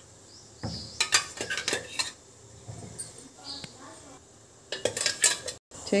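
A metal spoon scraping and clinking against a steel bowl of tomato paste, in two bouts of clatter: one about a second in and another near the end.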